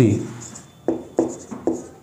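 Marker writing on a whiteboard: four short, sharp strokes in quick succession in the second half.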